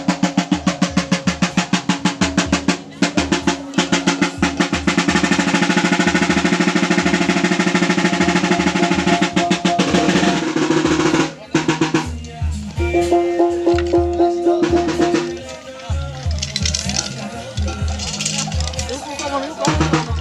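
Maguindanaon gong-and-drum ensemble playing Sagayan dance music: fast, driving drumbeats over ringing gong tones. About halfway through the drumming breaks off briefly, then carries on with a looser beat under a held gong tone.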